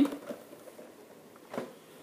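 Faint rustling and light taps of boxed Funko Pop figures being handled and set down, with a brief louder sound about one and a half seconds in.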